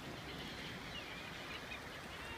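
Gulls giving several short, faint, high calls over a steady outdoor background hiss.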